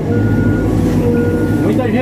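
Caterpillar backhoe loader's diesel engine running, heard from inside the cab, with its backup alarm beeping twice, each beep about half a second long: the machine is in reverse.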